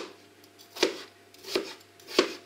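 A kitchen knife slicing peeled raw potatoes on a plastic cutting board: three sharp cuts, each ending on the board, a little under a second apart.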